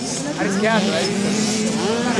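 Engines of 65cc two-stroke minicross bikes running steadily on the track, mixed with people's voices close by.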